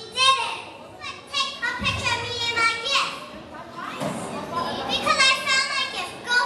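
Children's high-pitched voices calling out in several short phrases, with short gaps between them.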